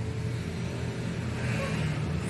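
A motor vehicle's engine running with a steady low rumble, with a hiss that grows louder near the end.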